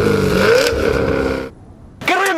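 Sound effect of a car engine revving, rising in pitch, that cuts off suddenly about one and a half seconds in.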